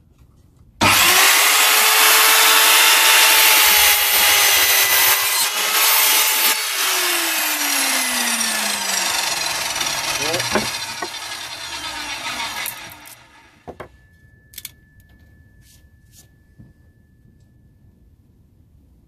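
Evolution R210SMS sliding mitre saw starting suddenly about a second in and cutting through a 2x4 with its 210 mm tungsten carbide tipped blade. The motor then winds down with a falling pitch over several seconds. A click follows, then a faint steady high tone.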